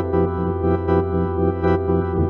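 Keyboard music: sustained organ-type chords played on a synthesizer keyboard, the held notes pulsing rapidly and evenly under an LFO modulation.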